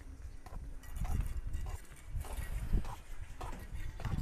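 Hooves of a large Simmental bull clopping on a concrete road as it walks carrying a rider, an uneven few knocks a second.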